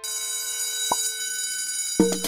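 Electronic jingle sound effect: a held, bright chord of many steady high tones, with one short lower note about a second in.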